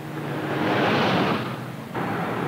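A car passing on a wet road at night: a rushing whoosh that swells to a peak about a second in and fades away, over the low steady hum of a car.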